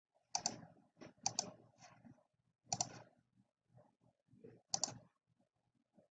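Computer mouse button clicks, faint and sharp, coming in quick pairs a second or two apart.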